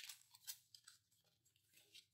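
Faint paper rustles: the pages and tucked tags of a handmade junk journal being turned and handled by hand, a few short brushes of paper.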